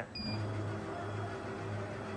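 Oscillating-knife CNC cutting machine humming steadily while its gantry head is jogged into position over the table. A short high electronic beep sounds just after the start.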